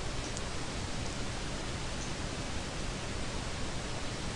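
Steady, even hiss of background noise, with nothing else heard: the recording's noise floor in a pause between words.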